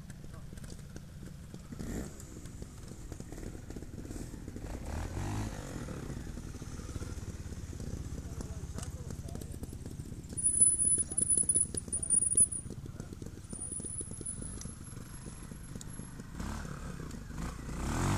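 Trials motorcycle engine running at low revs, a quick steady pulsing. In the second half a thin, high-pitched squeal sounds twice, each time for a couple of seconds, louder than the engine.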